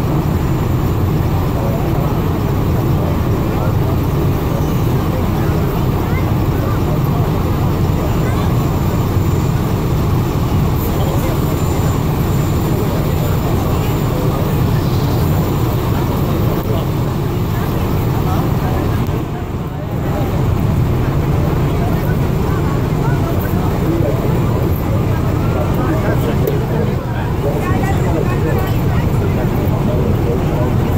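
Distant rumble of an Atlas V rocket climbing away after launch: a steady, low, crackling roar, with a brief dip about two-thirds of the way through.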